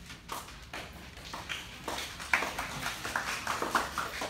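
A string of irregular light taps and knocks, sparse at first and thickening towards the end, the loudest a little over two seconds in.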